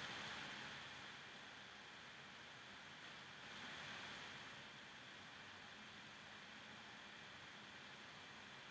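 Near silence: faint steady hiss of room tone, swelling slightly a couple of times.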